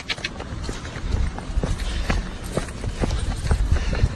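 Footsteps on a paved street, about two steps a second, heard through a handheld phone with low handling rumble.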